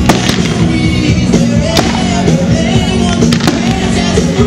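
Fireworks bursting in the sky with a handful of sharp bangs, some close together, over loud music played for the show.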